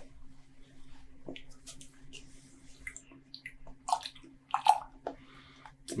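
A man sipping beer from a glass and swallowing: small wet mouth and liquid sounds and light clicks, with two louder short sounds about four seconds in.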